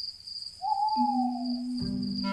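Cartoon night ambience: one long owl hoot, a drawn-out tone that sags slightly in pitch, over a steady high chirring of crickets. A low sustained music note comes in about halfway, with more notes joining near the end.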